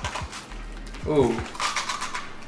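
Crunching and chewing of a hard, dry Ouma buttermilk rusk, with a few short, sharp crunches.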